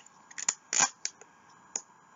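A plastic video-game case being handled: a few sharp plastic clicks and a short scrape just before a second in, then a single click near the end.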